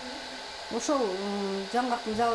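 A woman's voice: a drawn-out vowel that falls in pitch and then holds level for about a second, over a faint steady hiss.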